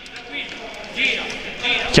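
Live court sound of a futsal match in play: the ball and players' shoes on the hall floor, with players calling out.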